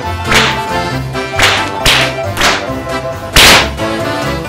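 Five sharp swishing swats of a fly swatter, the last and loudest near the end, over background music.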